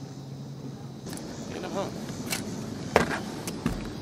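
Handling knocks from the camera being picked up on the boat: a sharp knock about three seconds in and a dull thump shortly after. A low steady hum stops about a second in.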